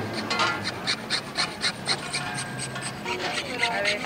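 A hand file scraping on metal in quick, even strokes, about four a second, as a key blank is filed down by hand.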